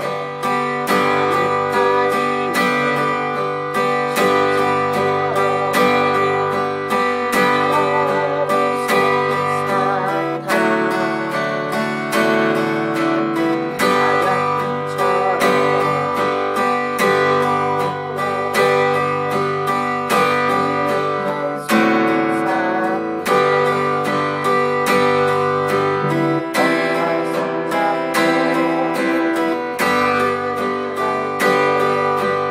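Steel-string acoustic guitar strummed in a steady, even beginner's accompaniment rhythm, changing between G, D, D7 and C chords every bar or two.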